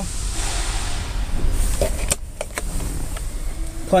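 A steady airy hiss that cuts off about two seconds in. It is followed by a few sharp clicks and knocks as the centre console lid of the truck cab is unlatched and lifted open.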